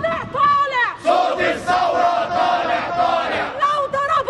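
A woman shouting protest chants in a high, strained voice, holding one long drawn-out call for about two and a half seconds in the middle, with a small crowd of protesters' voices around her.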